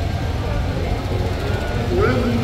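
Indistinct voices talking quietly over a steady low rumble.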